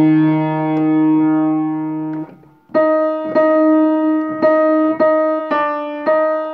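Upright acoustic piano: a held chord that stops about two seconds in, then after a short gap a single line of separately struck notes, about two a second, picking out the alto part.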